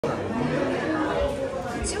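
People talking and chatting in a room, several voices overlapping.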